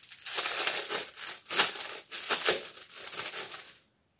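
Packaging crinkling as it is handled, in irregular bursts of rustling that stop shortly before the end.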